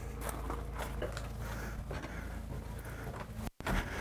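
Footsteps and handheld camera noise as the camera walks along, over a steady low rumble with faint light ticks. The sound cuts out completely for a moment near the end.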